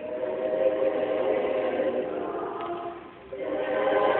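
A church choir singing together, coming in at the start and breaking off briefly about three seconds in before entering again, louder.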